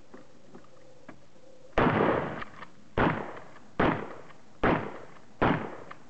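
Shotgun firing five rounds of 00 buckshot in quick succession, about a second apart. Each shot is a sharp report with a short echo trailing after it.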